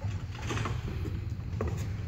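Low steady background hum, with a few faint knocks or rustles about half a second in and near the end.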